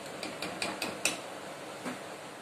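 Light metallic clicks and taps of kitchen utensils against a metal cooking pan, about six in two seconds, the last one near the end.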